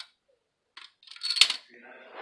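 A plastic Connect Four checker dropped into the upright grid, clattering down its column in a quick run of clicks that ends in a sharp knock about one and a half seconds in.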